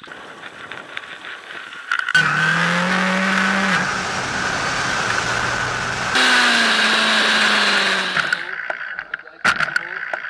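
Racing motorcycle engine running at high revs, in two abrupt clips cut in about two and six seconds in; in the second the revs fall steadily.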